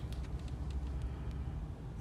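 A low, steady background rumble with a few faint clicks.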